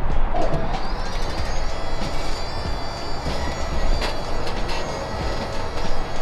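Vehicle engine running with a high-pitched power steering pump whine that starts about a second in and then holds steady while the steering wheel is turned. The rack-and-pinion power steering system has just been filled and bled.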